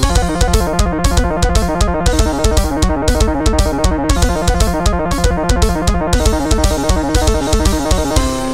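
Song played back from a MIDI sequencer: square-wave synth leads over a synth bass line and a drum kit, with fast repeating notes and a steady beat.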